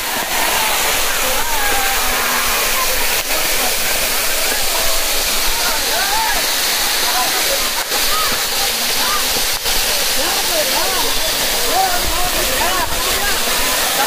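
Waterfall pouring down onto people standing beneath it: a loud, steady rush of falling water, with people's voices calling out over it.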